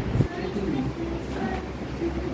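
A duster rubbing across a whiteboard in quick strokes that stop a quarter second in, followed by low voices over a steady low hum.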